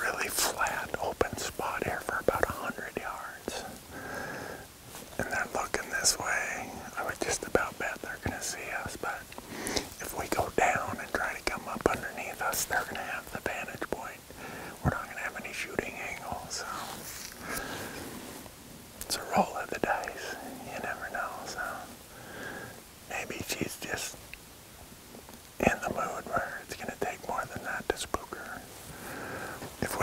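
A man whispering in short phrases.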